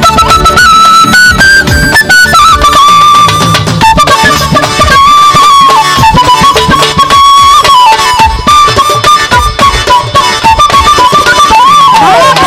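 Side-blown bamboo flute playing a stepping folk melody, over a rhythmic percussion accompaniment.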